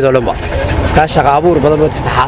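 A man speaking Somali, with a steady low rumble of street traffic behind his voice.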